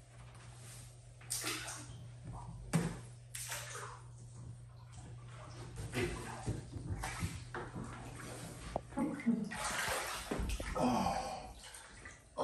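Shallow salt water in a float tank splashing and sloshing in irregular bursts as a person climbs in and lowers himself to float, busiest near the end. A steady low hum runs underneath.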